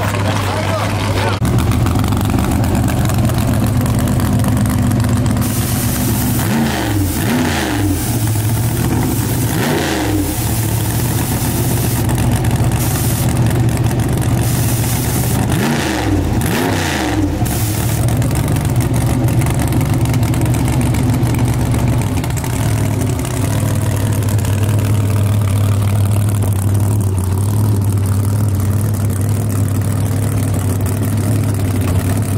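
Drag race car engine idling loudly and steadily, revved up and back down several times in the middle part.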